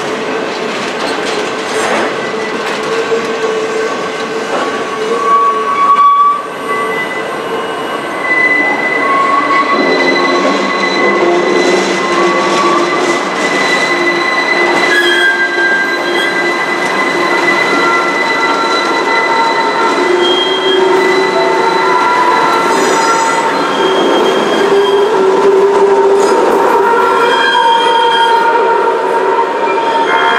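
Box cars of a freight work train rolling past close by. Their steel wheels squeal, with several thin high tones that come and go over the rumble of the cars.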